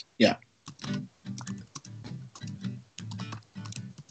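Acoustic guitar playing a song's intro in G, faint and choppy as it comes through a video call, after a quick spoken 'yeah' at the start.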